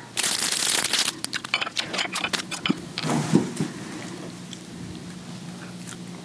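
A tin of sardines being unpacked and opened: about a second of tearing and crinkling packaging, then a run of sharp clicks and cracks that die away after a few seconds.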